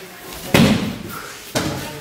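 Aikido practitioners hitting the training mat as they are thrown and fall: a loud thud about half a second in and a second one about a second later, each with a short echo.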